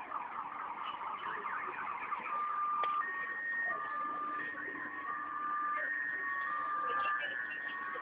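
A two-tone electronic warning signal, alternating between a lower and a higher pitch in steps of under a second, starting a little over two seconds in, over a rustling, crackling background noise.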